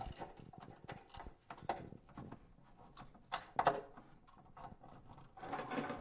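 Irregular faint clicks and knocks of a screwdriver working at a stripped, rusted-on screw in old cabinet hardware, with a few sharper clicks in the middle.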